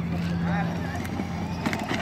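Battery-powered ride-on toy jeep's electric motors humming steadily as it drives, the hum dropping away about halfway through, with its plastic wheels rolling over concrete and gravel.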